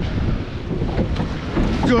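Wind on the microphone over water rushing and splashing around a rowed surf boat as the crew pull their oars.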